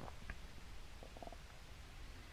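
Quiet room tone under a steady low hum, with a faint short sound just after the start and a brief faint gurgle-like sound about a second in.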